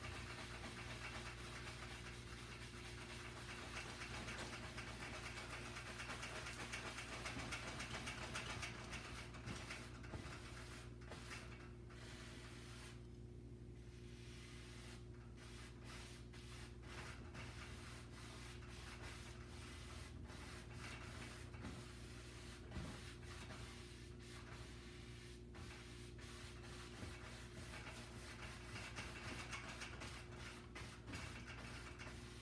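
Bristle brush rubbing and dabbing oil paint on a stretched canvas, a faint dry scratchy scrubbing that is loudest a few seconds in, over a steady low hum.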